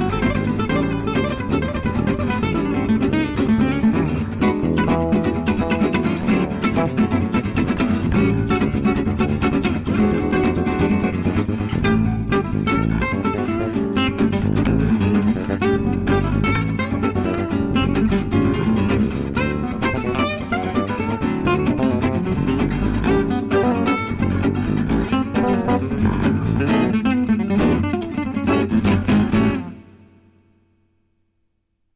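Gypsy jazz (jazz manouche) played on acoustic guitars with bass: plucked guitar lines over a strummed rhythm. It stops abruptly near the end.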